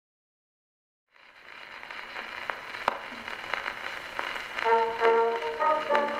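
Acoustic-era celluloid phonograph cylinder starting to play: surface hiss fades in about a second in, scattered with sharp clicks. Near the end, a recorded instrumental introduction with held notes begins over the hiss.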